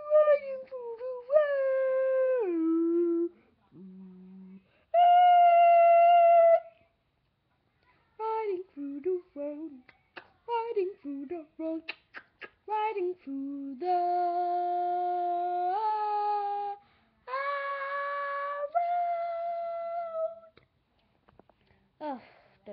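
A young girl singing without words, a mix of long held notes and a run of short choppy ones in the middle.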